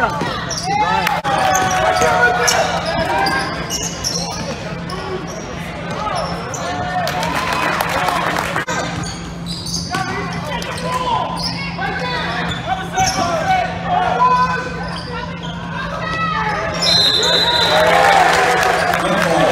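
Basketball game sounds in a gym: the ball bouncing on the hardwood, short squeaks and shouts from the court, with a brief whistle near the end. A steady low hum runs underneath.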